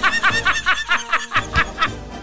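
A man laughing hard in a quick run of short bursts, about seven a second, over background music.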